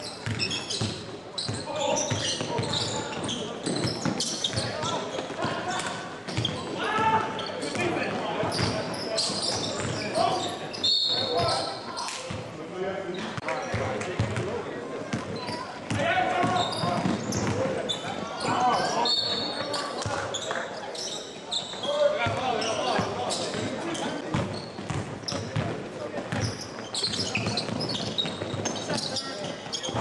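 Live sound of a basketball game in a gym: a ball bouncing repeatedly on the hardwood court, with voices of players and spectators throughout.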